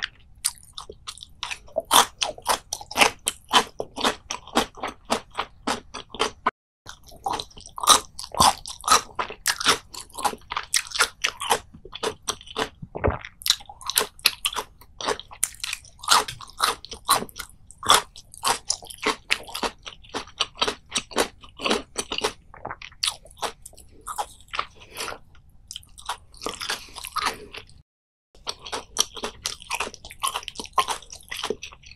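Close-miked crunching and chewing of crisp food: many sharp, irregular crunches, several a second, as the food is bitten and chewed. The sound cuts out briefly about seven seconds in and again near the end.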